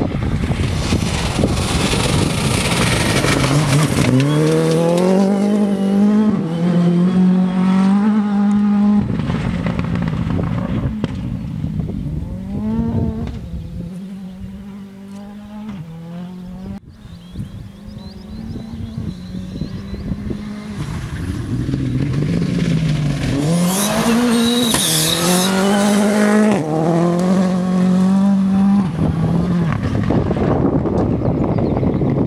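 A World Rally Car's engine is driven hard on a gravel stage: it revs up through the gears with quick repeated upshifts. Around the middle the engine fades as the car moves away, then it comes back loud, revving and shifting up again near the end.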